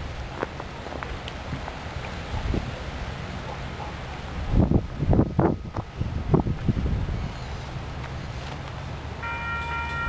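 Wind on the microphone with a low rumble, swelling in a few gusts midway. About a second before the end, a distant locomotive horn starts sounding a steady chord as the approaching Capitol Corridor train's F59PHI nears.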